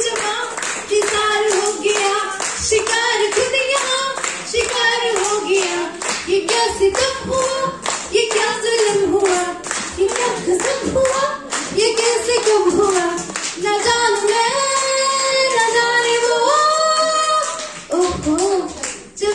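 A woman singing a Hindi film song into a microphone, with people clapping along in a steady beat. Near the end she holds long notes that step upward in pitch.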